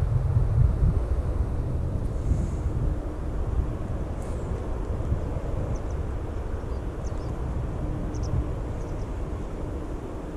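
Wind buffeting an outdoor microphone: a low, uneven rumble that slowly eases off, with a few faint short high chirps in the second half.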